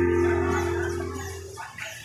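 The closing chord of a piece on an electronic keyboard, held and fading out over about a second and a half.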